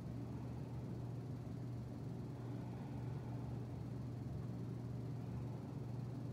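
Steady low room hum with no other events.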